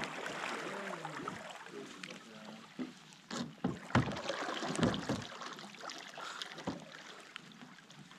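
Canoe paddling on calm water: paddles dipping and pulling, with scattered short splashes and knocks of paddle against canoe, and faint distant voices early on.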